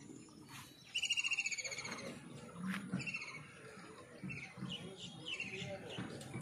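A bird calling outdoors: a rapid, high trill about a second long beginning about a second in, followed by several shorter, fainter chirps.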